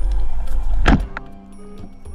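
Background music, with one sharp, loud snap about a second in: a band-powered speargun firing underwater.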